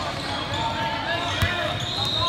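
Basketball bouncing on a hardwood gym floor during play, with one sharp bounce about one and a half seconds in, amid voices in the hall.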